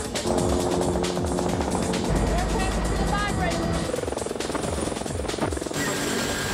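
A soundtrack of music mixed with the steady chop of a helicopter's rotor and brief snatches of voices, with a deep low rumble about two seconds in.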